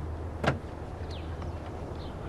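A car door clunks once, sharply, about half a second in, over a steady low hum.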